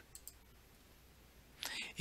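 Quiet room tone with a few faint computer-mouse clicks near the start, and a short breathy hiss near the end.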